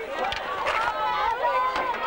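A crowd of voices shouting and calling over one another, no single voice clear enough to make out.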